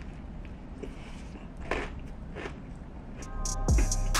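Close-up crunchy bites and chewing of a fried chicken burger, with two louder crunches around the middle. Near the end, hip-hop music with heavy drum beats comes in.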